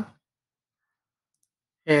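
Near silence between phrases of a man's narration, with a faint computer mouse click shortly before the voice resumes at the end.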